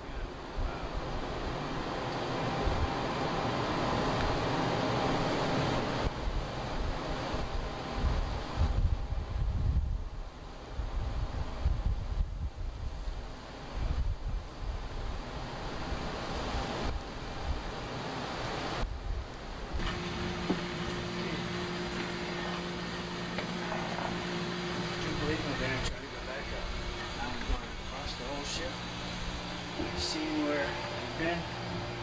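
Wind buffeting the microphone over the rush of the sea along a ship's side, in uneven gusts with a heavy low rumble. About two-thirds of the way through it gives way to a steady shipboard machinery hum with several low held tones.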